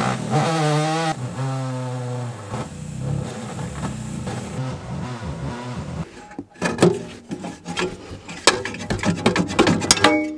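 Pneumatic cutting tool running as it cuts into the lip of an aluminium battery tray, its pitch wavering and dipping as it bites, for about four and a half seconds. From about six seconds in come a series of sharp metallic knocks and clanks as the cut tray is handled.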